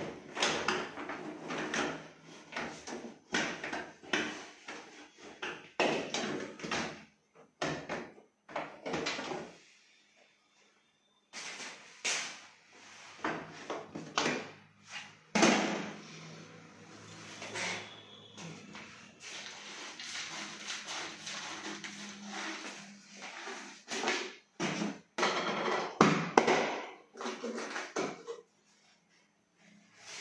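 Dishwasher's lower wire dish rack rolled out on its rails and lifted out, with irregular rattles, clatters and knocks of metal and plastic handling; sharp knocks stand out about halfway through and again near the end.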